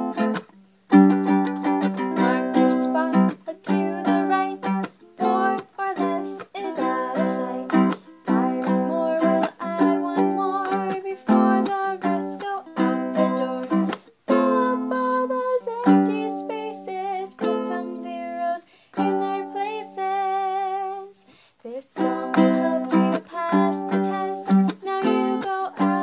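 A woman singing the steps of a rounding song at a quick pace over a strummed string instrument.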